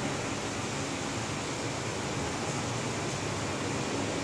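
Steady, even hiss of classroom room noise, with no distinct events.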